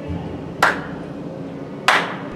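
Two sharp smacks, about a second and a quarter apart, each with a short ringing tail.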